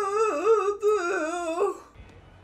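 A person humming a high, wavering tune in two phrases, with a short break about a second in, stopping near the end.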